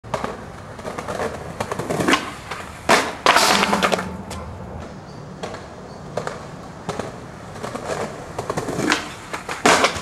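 Skateboard on concrete: wheels rolling, with sharp clacks of the board about two to three seconds in and a louder scraping stretch just after. A loud crash of the board near the end as the trick is bailed and the board gets away from the rider.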